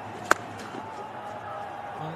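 A single sharp crack of a willow cricket bat striking the leather ball, a fraction of a second in, as a short ball is hit away into the outfield.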